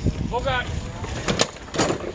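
Low rumble of wind on the microphone, with a short vocal sound about half a second in and two sharp knocks near the end.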